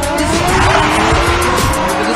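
A car drifting, its tyres squealing as they slide and its engine revving in rising and falling glides, over loud music.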